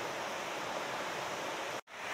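Steady rushing of a fast river, which drops out for an instant near the end and then resumes.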